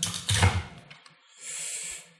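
Clear plastic fineliner pen case being handled and opened: a few clicks and knocks at the start, then a short high scraping hiss near the end as the case halves come apart.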